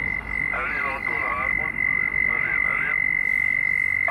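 Single-sideband voice received on the Xiegu X6100 HF transceiver and heard through its speaker: a distant station's voice, thin, garbled and cut off at the top, in two short stretches over band noise. A steady high whistle runs under it.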